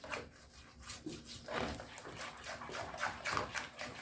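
Silicone whisk beating a thick mixture of condensed milk, cream and cocoa powder in a nonstick frying pan: a quick, uneven run of wet swishing and scraping strokes.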